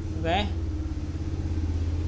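A brief spoken 'ok?', then a steady low drone with a motor-like hum that holds level through the pause.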